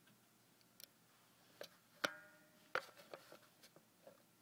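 Scattered light clicks and taps. One sharp click about two seconds in is followed by a short ringing tone, then another click.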